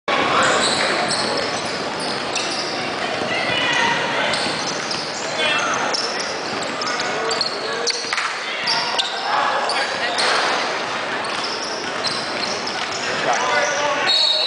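Basketball gym din: balls bouncing on a hardwood floor, sneakers squeaking in short high chirps, and indistinct shouts from players, all echoing through a large hall.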